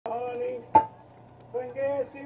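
A man's voice singing drawn-out phrases into a handheld microphone over a PA, with a steady low hum underneath. One sharp knock with a short ring sounds just under a second in.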